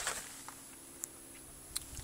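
Quiet: faint steady background hum with three faint small clicks, about half a second, one second and nearly two seconds in.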